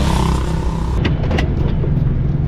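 A Suzuki Every Wagon kei van, its 660 cc three-cylinder engine, driving with a steady low engine drone. For about the first second a loud hiss of wind and road noise lies over it; then the hiss cuts off, leaving the duller drone heard from the cabin, with two short clicks.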